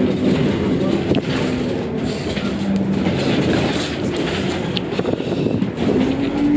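City bus running, heard from inside the passenger cabin: a steady engine and road rumble.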